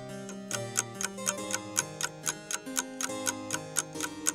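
Countdown clock ticking, about four ticks a second, over soft background music with low held tones, marking the time to answer a quiz question.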